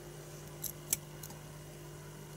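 Fine metal tweezers handling a loose coil of very thin copper wire, making two faint small clicks about a second in, over a steady low hum.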